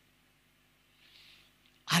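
A pause in a man's amplified speech: near silence with a faint, brief breath about a second in, then his voice through a handheld microphone comes back loudly just before the end.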